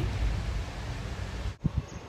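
Outdoor background noise with wind rumbling on the microphone. It drops off suddenly about three-quarters of the way through, followed by a few short low bumps.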